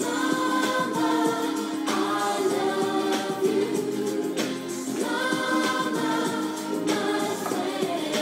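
Two male voices singing a song together in harmony, over steady held notes underneath.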